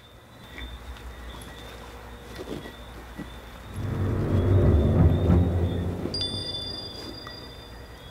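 A low, ominous rumble in the soundtrack, swelling to a peak about four to five seconds in and then fading, with a thin high steady tone coming in near the end: a suspense sound effect for a scary moment.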